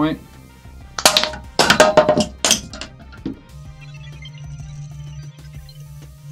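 Small ordinary magnets ejected from a magnetic ejection device, clattering: a few sharp clinks and knocks between about one and two and a half seconds in. A low steady music drone follows from about three and a half seconds.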